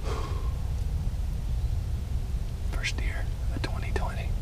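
A hunter whispering a few words near the start and again about three seconds in, over a steady low rumble.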